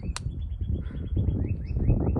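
A small bird trilling: a rapid run of short high chirps, about ten a second, that drops slightly in pitch about halfway through, over a low rumble of wind on the microphone.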